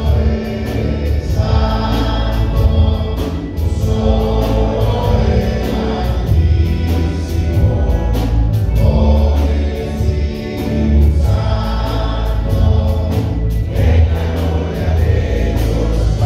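Church choir singing a hymn with instrumental accompaniment, over strong bass notes that change every couple of seconds.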